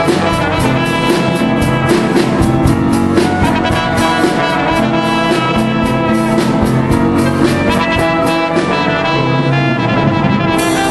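Live band music led by a bell-front marching brass horn playing held melody notes, over a steady beat.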